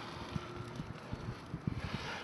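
Faint wind buffeting the camera microphone, with irregular low rumbles and bumps.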